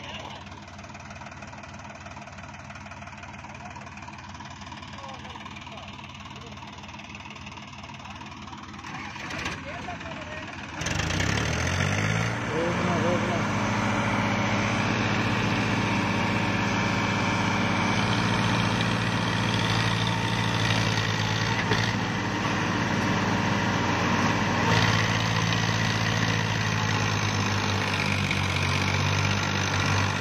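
Diesel tractor engines running. About eleven seconds in, the engine note rises sharply in pitch and gets much louder, then holds steady under heavy load as a Sonalika tractor tows a Powertrac tractor and its loaded soil trolley by rope through ploughed ground.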